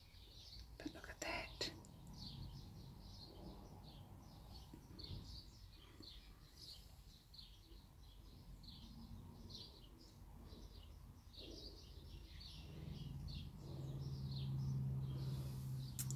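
Faint, quick high chirping of small birds repeating irregularly throughout. There are a few soft clicks about a second in, and a low steady hum comes in about thirteen seconds in.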